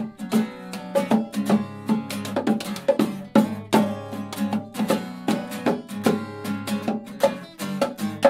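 Two acoustic guitars strummed together in a steady rhythm, with hand drums played along under them: an instrumental stretch of live acoustic band music.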